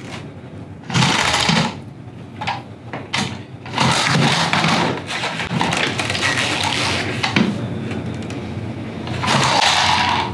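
A man making a truck engine noise with his mouth while rolling a toy truck along a table: a rough, buzzing 'brrr' that comes in short bursts at first, then runs for several seconds.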